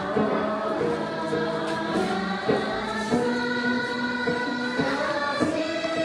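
A group of voices singing a Dolpo gorshey dance song in unison, in long held notes that step from one pitch to the next.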